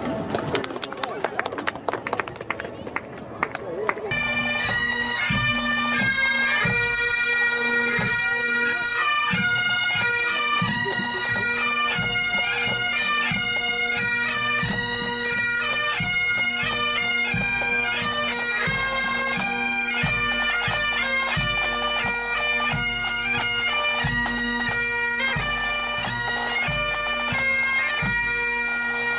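Pipe band playing: bagpipes with steady drones under the chanter melody, and regular drum beats. The pipes come in full about four seconds in, after a few seconds of quieter, rapid strokes.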